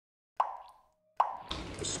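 Two short plops a little under a second apart, each with a brief ringing tone that fades quickly, out of silence; a steady background hiss comes in near the end.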